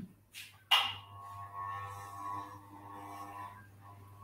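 A sudden sharp sound about 0.7 s in, the loudest moment, followed by a steady ringing tone of several pitches lasting about three seconds. A low steady hum runs underneath.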